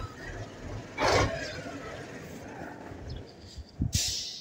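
A Ural truck's engine running at idle, with a short burst of hiss about a second in and a couple of sharp thumps near the end.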